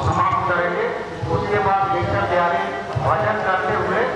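A man's voice in drawn-out phrases, with some notes held for a moment.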